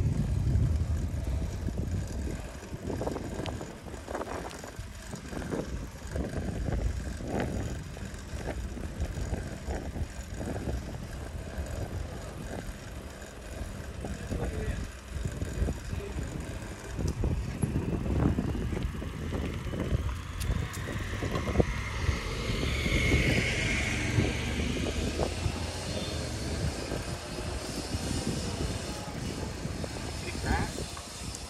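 Wind buffeting the microphone on a moving bicycle, with tyre rumble on asphalt. About two-thirds of the way through, a higher hiss swells and then fades.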